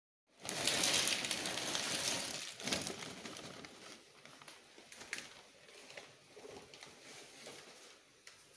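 Jackfruit slices deep-frying in hot oil, sizzling loudly from just after the start for about two seconds. The sizzle then drops to a quieter hiss with scattered crackles and clicks.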